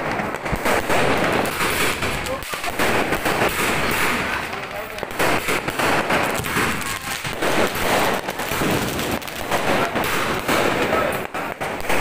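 Aerial fireworks bursting overhead into crackling sparks, a dense run of sharp pops and bangs.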